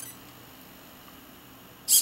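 Hobby servo whirring briefly near the end as it swings the camera on to its next 25-degree panorama step, after a few faint high electronic chirps from the camera at the very start.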